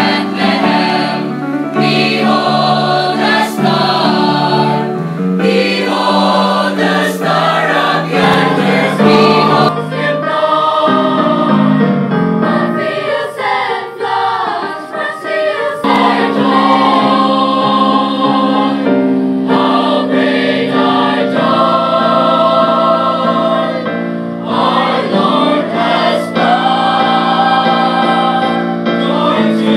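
Mixed choir of boys, girls and a woman singing a Christmas cantata together, moving through chords and then holding long sustained notes in the second half.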